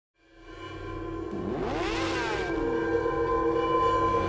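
Logo intro music fading in: steady held tones with sweeping sounds that rise and fall about one and a half to two and a half seconds in.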